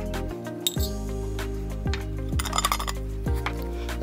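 Dry rice poured from a glass jar into a metal measuring cup and tipped into a plastic bowl: a light rattle of grains and a few clinks of metal against glass. Background music plays throughout.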